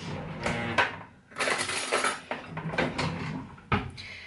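Kitchen handling sounds around a cereal bowl: a brief rustling scrape about one and a half seconds in, light knocks, and a sharp click near the end as a teaspoon is picked up.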